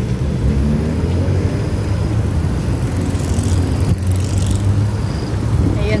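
Wind buffeting the handheld phone's microphone: a steady low rumble.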